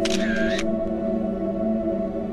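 Slow ambient background music of steady held tones. A short, bright transition sound effect lasts about half a second at the start, as the slide changes.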